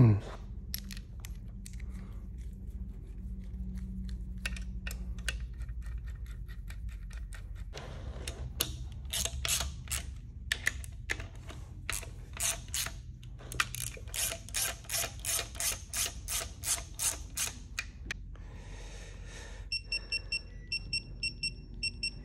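Rapid clicking of a hand ratchet running down rocker arm bolts on a V8 cylinder head, coming faster for a few seconds in the second half. Near the end comes a quick series of short electronic beeps from a digital torque wrench being set.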